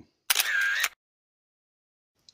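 A camera-shutter sound effect, one short snap lasting about half a second, accompanying a flash-style video transition.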